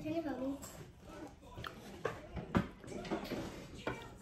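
Soft talking voices with two short knocks, about one and a half and two and a half seconds in, as fruit is picked up off a wooden table.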